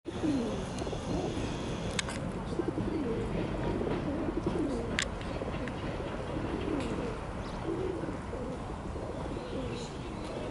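Pigeon cooing repeatedly, a series of low falling calls, with two sharp clicks about two and five seconds in.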